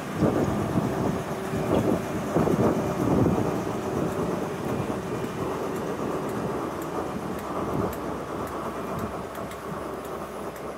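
Network Rail New Measurement Train passing: class 43 HST diesel power car 43062 rumbling by, then its Mk3 coaches rolling past on the rails. The noise is loudest and most uneven in the first three seconds, then settles into a steadier rumble that slowly fades.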